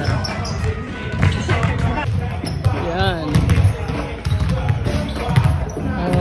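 Basketballs bouncing on a sports-hall floor, an irregular run of thuds echoing in the large hall, with shouting voices and music in the background.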